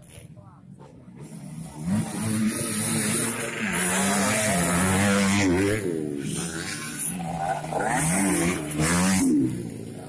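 Dirt bike engine passing close by on a motocross dirt track, building up about two seconds in, its pitch rising and falling as the throttle is worked, then fading near the end.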